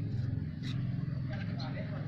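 Indistinct voices talking over a steady low rumble.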